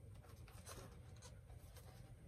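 Near silence: a low room hum with a few faint rustles and taps as a pair of athletic shoes is handled and turned over.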